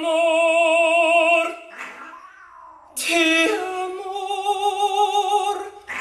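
A high singing voice holds two long, wavering notes without words: the first ends about one and a half seconds in, and the second starts about three seconds in and stops shortly before the end.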